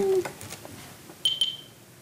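A short high-pitched electronic beep, about half a second long, a little over a second in.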